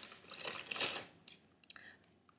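A shopping bag rustling as a hand rummages in it and pulls an item out, followed by a few small clicks.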